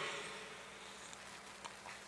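Quiet room tone during a pause in speech: a faint steady hiss with a low hum, and a couple of small faint clicks near the end.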